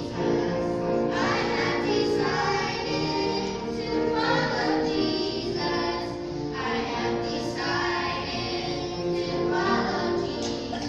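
A group of children singing a song together.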